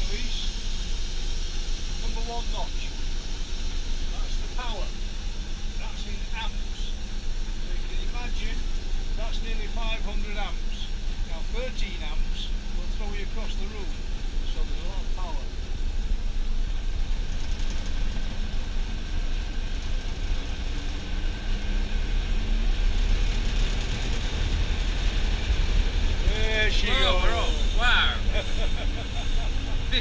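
Diesel locomotive engine running, heard from inside its cab, with a steady low rumble. The rumble grows louder over the last third as the engine is throttled up and the locomotive moves off.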